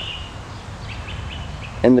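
A small bird chirping: one short rising call at the very start, then a quick run of short chirps about a second in, over a steady low outdoor rumble.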